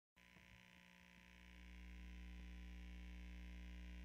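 Near silence with a low, steady electrical hum from the guitar and audio rig, rising slightly about a second and a half in.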